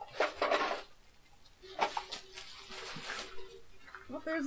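Thin black plastic garbage bag rustling and crinkling in several bursts as hands rummage through it, with hard plastic toy figures knocking together inside.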